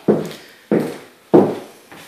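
Footsteps on a hard floor: three evenly spaced steps about two-thirds of a second apart.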